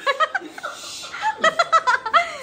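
Laughter in two bursts of short, quickly repeated high-pitched 'ha-ha' pulses: one right at the start and a longer run of about six pulses a second in the second half.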